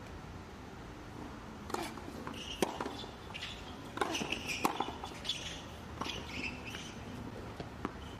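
Tennis rally on a hard court: a string of sharp racket-on-ball strikes starting about two seconds in, with short high squeaks of shoes on the court between the shots.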